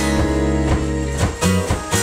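Live indie rock band playing: strummed acoustic guitars over electric bass, keyboard and drum kit, with a steady beat.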